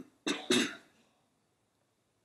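A person coughing twice in quick succession, the second cough louder, then quiet.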